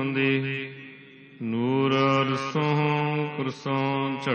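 A voice chanting Gurbani, Sikh scripture, in long held melodic notes. It fades briefly about a second in, then picks up again.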